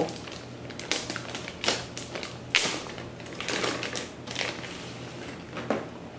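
A clear plastic protective bag rustling and crinkling in irregular bursts, with sharp crackles, as it is handled and pulled off a boxed electronic unit.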